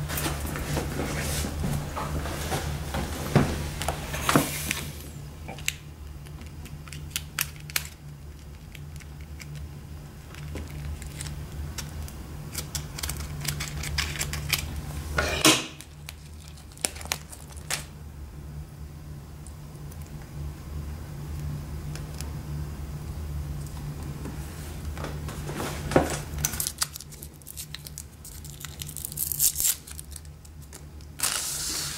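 Clear plastic wrapping crinkling and tearing as it is cut with scissors and stripped from a wristwatch and its strap, in scattered bursts with sharp clicks; the loudest come about three seconds in, halfway through, and near the end. A steady low hum runs underneath.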